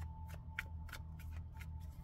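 A tarot deck being shuffled by hand: a run of short card clicks, about three a second, over a steady low background hum.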